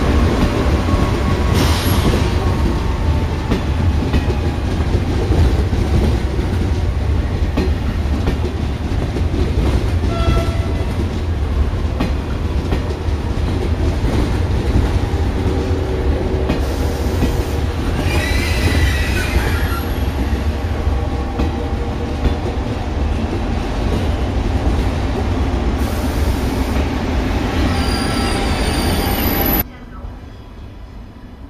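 TGV trainset running through the station: a steady loud rumble of wheels on rail, with a brief wavering wheel squeal in the middle. The sound cuts off suddenly just before the end.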